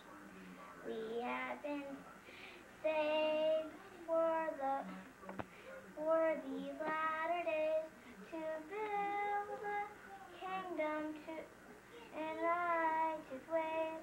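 A young girl singing a song alone, in held notes phrase by phrase, with short breaths between the phrases.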